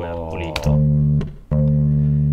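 Bass line of the song's verse played back from the mix session: two held low notes at the same pitch, on D, with a short break between.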